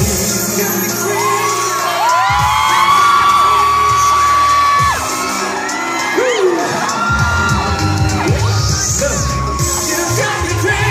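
Live pop song over a mall PA: the bass and beat drop away while long, high held vocal notes sound for a few seconds, with whoops from the audience. The full backing with bass comes back about seven seconds in.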